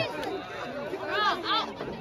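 Crowd chatter: several voices talking at once in the background, none of them close, with a couple of voices standing out a little past the middle.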